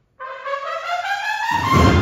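A cornet-and-drum band's brass comes in suddenly after a brief silence, with several held and moving tones. About a second and a half in, the full band comes in loudly, its low brass adding a deep bottom.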